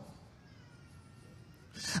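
A short pause between spoken phrases: near silence in the room, with a faint, steady high tone underneath. The preacher's voice trails off at the start and comes back at the end.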